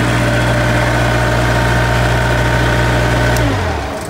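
A Thermo King trailer refrigeration unit's diesel engine running steadily, close up. About three and a half seconds in, its pitch falls and it winds down.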